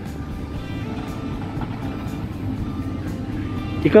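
Heavy construction machinery running with a steady, even low hum, under background music.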